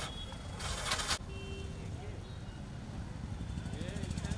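Street traffic: a steady low rumble of passing vehicle engines, an auto-rickshaw and a motorcycle among them, with faint voices in the background. A short loud hiss comes about half a second in.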